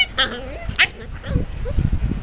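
Kishu puppy yelping in three short, high-pitched cries while an adult Kishu dog pins and disciplines it, with dull low thumps of the scuffle in the second half.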